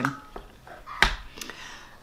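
Faint whining in the background, with two light clicks about a second in.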